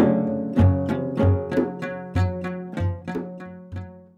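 Badakhshani string music on plucked lutes, struck in strong strokes about twice a second with a low thump under each, fading out gradually.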